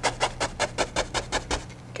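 A bristle brush tapped quickly and repeatedly against a canvas wet with oil paint, about five taps a second. The tapping stops shortly before the end.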